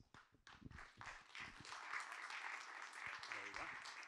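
Audience applauding, faint at first and building to a steady patter about a second in.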